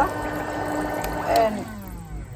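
Electric foot spa running, its water bubbling and churning over a steady motor hum. About one and a half seconds in there is a click, the bubbling stops and the motor's hum slides down in pitch as it winds down.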